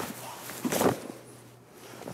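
Brief rustles and soft contact sounds from two karateka moving through a block and counter-strike: cotton gi sleeves and arms brushing, loudest just under a second in, then quiet.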